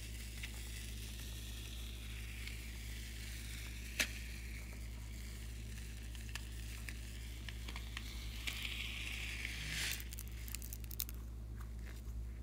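White foam squeezed out of a balloon through a plastic piping nozzle onto slime: a soft hiss with faint crackles and clicks, and one sharp click about four seconds in. The hiss grows louder and ends in a crackly sputter just before ten seconds.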